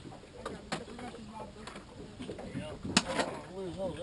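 Quiet, indistinct talk with a few sharp knocks from handling gear on the boat, the loudest knock about three seconds in.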